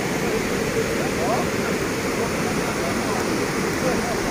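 Floodwater pouring through a breach in an earthen embankment: a steady rush of falling, churning water.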